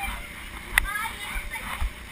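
Children's voices calling out, with irregular low thumps from bouncing on the inflatable floor and a sharp click a little under a second in.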